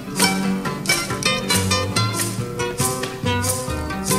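Instrumental passage of Peruvian criollo music: acoustic guitars plucked and strummed in a steady rhythm over a moving bass line, with no singing.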